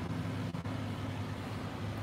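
Steady low hum inside the cabin of a moving car: engine and road noise.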